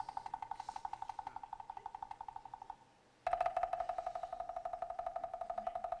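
Background music: a single pitched note struck in rapid repetition. Shortly before the halfway point it stops for about half a second, then resumes on a lower note, a little louder.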